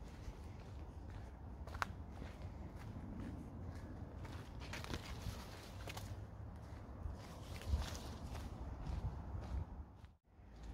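Footsteps along a dirt woodland path, with leaves and stems brushing past, and a sharp click about two seconds in.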